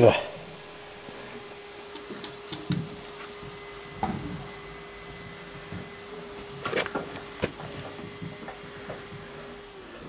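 A few light clicks and knocks of steel engine parts being handled as a sleeve operating lever is fitted, over a steady high whine and hum that cuts out near the end.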